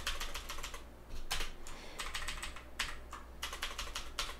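Computer keyboard keys being pressed while text is edited, clicks coming in quick runs with short pauses between them.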